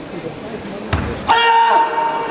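Karate kata on a tatami mat: a sharp thud from a bare foot or body landing on the mat about a second in, followed by a loud, held kiai shout, the loudest sound here.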